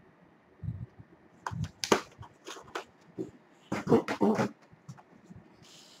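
Plastic DVD and Blu-ray cases being handled and moved about in a box: an irregular run of sharp clacks and rattles, loudest about two and four seconds in.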